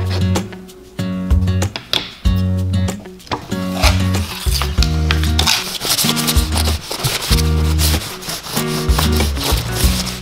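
Background music with a repeating bass line; from a few seconds in, a cloth rubs along a taped bundle of wooden dowels under the music.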